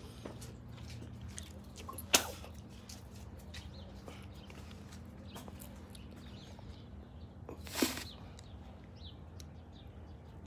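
Footsteps on concrete porch and steps over a steady low hum. There is a sharp knock about two seconds in and a short rushing burst of noise near eight seconds.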